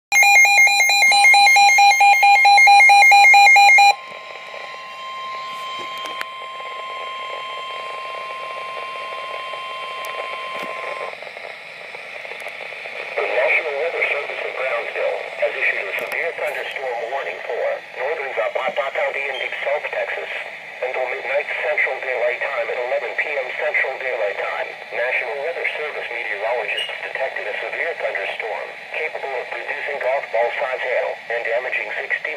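Weather radio receiver sounding an EAS severe thunderstorm warning: about four seconds of loud buzzing digital header bursts, a steady single-pitched warning alarm tone until about eleven seconds in, then a computerized voice starting to read the warning through the radio's speaker.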